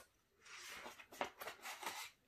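A picture book's page being turned by hand: a faint rustle of paper starting about half a second in, with a few soft ticks.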